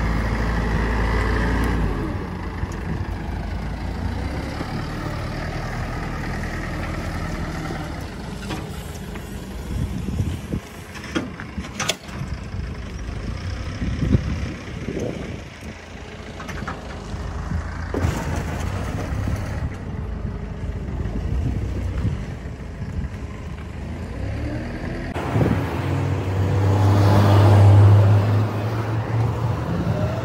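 Heavy scrapyard machinery running with a steady low engine drone while a car body is torn apart, with metal crunching and several sharp bangs around the middle. Near the end the engine drone swells louder for a couple of seconds.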